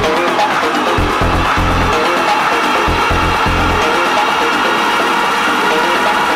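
Eurodance club track in an instrumental passage without vocals: heavy bass pulses under synth lines in the first half, then the bass mostly drops out after about four seconds, leaving sustained synth tones.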